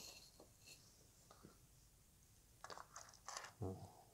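Mostly near silence, with a few faint clicks and then a quick cluster of sharp clicks about three seconds in: hard plastic parts of a snap-together model kit being handled.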